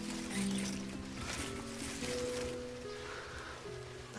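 Soft background music of slow, held notes that move to a new pitch every second or so.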